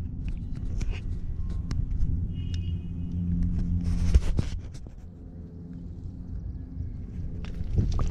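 Low, steady rumble on a body-worn action camera, with scattered knocks and rustling as it is jostled, and one loud rustling burst about four seconds in.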